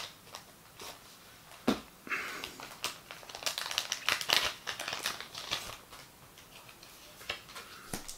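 Scissors snip into a foil trading-card booster wrapper with a couple of sharp clicks, then the foil crinkles for several seconds as the pack is pulled open and the cards are drawn out.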